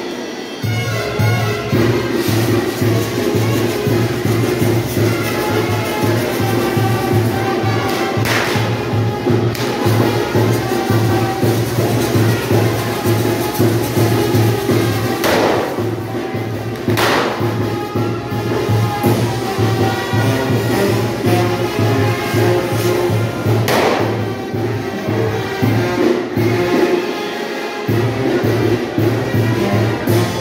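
Brass band playing a lively dance tune over a steady, fast-pulsing bass beat. Four short noisy bursts from the fireworks cut through it, one about a quarter in, two just past halfway and one about three-quarters through.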